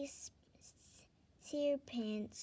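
A woman reading a story aloud: one phrase ends with a hissed 's', there is a pause of about a second with only faint breath-like hiss, then she begins the next phrase.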